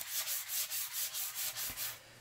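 Hand wet sanding of a shellac-coated mahogany box with 320-grit wet-or-dry sandpaper: quick back-and-forth scratchy strokes, about five a second, which stop near the end.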